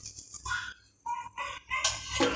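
Chickens calling in the background, a rooster crowing among them, in several short calls.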